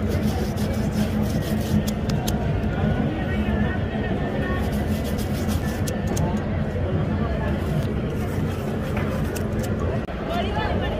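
Busy city street ambience: background voices of passers-by over a steady low hum, with scattered sharp clicks.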